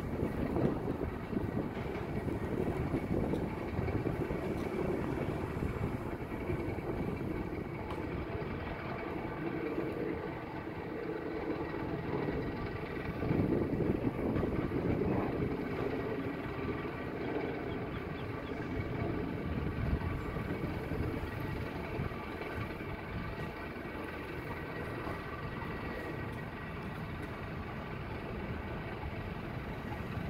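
A steady mechanical drone, heaviest in the low range, with a constant hum of several steady tones and no clear change.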